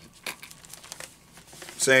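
A few soft, brief crinkles of thin paper being handled, as when the pages of a book are turned, then a man's voice starts near the end.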